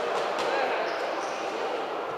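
Indistinct chatter of many voices echoing in a large sports hall, with a couple of short sharp knocks about half a second in.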